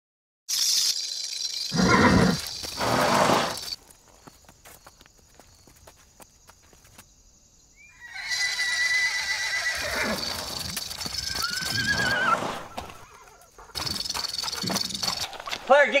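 A horse whinnying and neighing in loud, repeated calls, with a quieter stretch in the middle.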